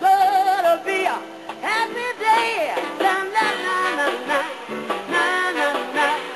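Live jazz band playing an easy-listening soul song, with a bending lead melody line over the band's accompaniment.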